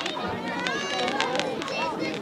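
A crowd of spectators, children among them, chattering, calling and squealing while fireworks go off, with a few sharp pops from the fireworks.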